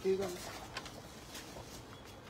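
A brief low hum at the very start, then faint rustling and light taps of fabric being handled.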